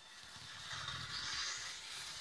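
Faint rustling noise with a low rumble, without words.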